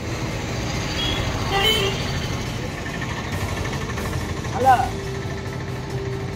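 Street ambience: a steady rumble of traffic with faint voices around it, and a short rising sound about three-quarters of the way through.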